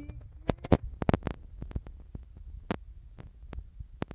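About a dozen irregular sharp thumps and knocks, the loudest within the first second and a half. They come from the recording phone being jostled and carried while its holder moves about.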